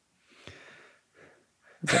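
A man's soft, breathy chuckle into a close microphone: a few quiet puffs of breath, then speech begins near the end.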